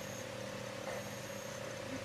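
Faint steady hum with background hiss and no distinct events: the gap between two promos as the TV plays, recorded through a phone's microphone.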